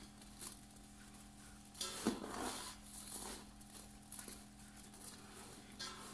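Bare hands kneading and squeezing moist bulgur paste for çiğ köfte against a dimpled stainless-steel tray: faint, irregular squishing and scraping, with a louder scuff about two seconds in, over a steady low hum.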